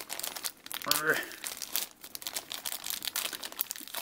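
Thin clear plastic bag crinkling and crackling as it is handled and pulled open with the fingers, in quick irregular bursts.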